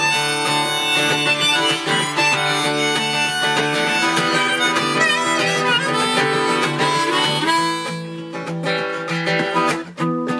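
Harmonica playing an instrumental break over acoustic guitar. Near the end the harmonica drops out and the guitar carries on quieter.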